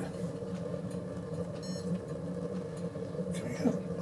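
Lit wood-pellet rocket stove boiler running with a steady low rumble of burning draft. A brief high electronic beep sounds about a second and a half in.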